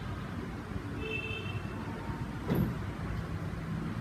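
Steady low background rumble, with a single short knock about two and a half seconds in.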